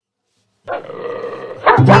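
An Alaskan Malamute vocalizing as it yawns wide. The sound starts about two-thirds of a second in and is a rough, drawn-out noise lasting about a second, followed by a few sharp louder sounds near the end.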